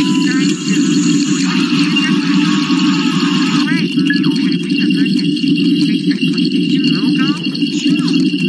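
Loud, dense audio track from videos playing back on a computer: a steady low drone with warbling, voice-like pitch glides arching over it a few times.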